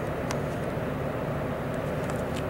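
A steady mechanical drone, as of a motor running, with a constant low hum and no change in pitch, and a faint click about a third of a second in.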